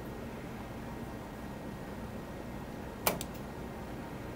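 Quiet room tone with a steady low hum, broken by one sharp click about three seconds in and a couple of faint ticks just after.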